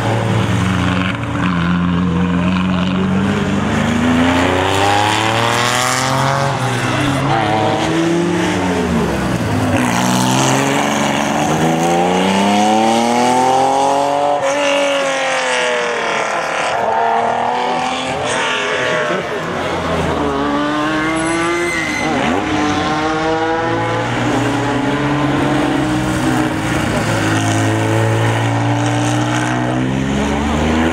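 Porsche 911 RS 3.0 rally car's air-cooled flat-six engine driven hard, its note climbing in pitch again and again and dropping at each gear change and lift-off as the car passes.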